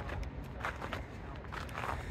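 Faint footsteps of a person stepping backwards, a few soft steps over a low steady outdoor background.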